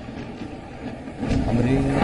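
An even rushing noise fades down over the first second. About one and a half seconds in, a man's voice begins.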